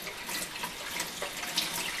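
Utility sink faucet running steadily, drawing water through a whole-house water filter system to purge the air trapped in the freshly refilled filter housings.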